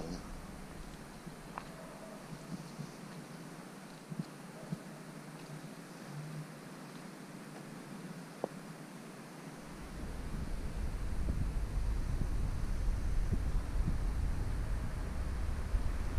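Faint outdoor background with a few small clicks, then from about ten seconds in a low, fluctuating buffeting of wind on the microphone.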